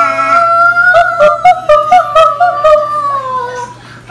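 High sing-song singing or cooing to a baby: a quick run of short notes, then a long high note that slides slowly down and fades out about three and a half seconds in.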